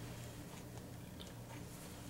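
Quiet kitchen room tone: a faint steady low hum with soft, barely audible handling noise.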